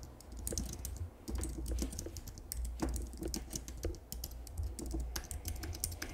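Typing on a computer keyboard: a steady run of quick, irregular key clicks as a word is typed out.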